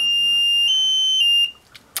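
T4 digital timer's electronic buzzer sounding one steady high beep for about a second and a half, stepping briefly higher in pitch partway through and then cutting off.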